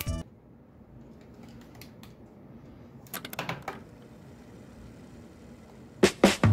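Faint clicking on a computer keyboard, with a few scattered taps and then a short quick run of clicks about three seconds in, over quiet room tone.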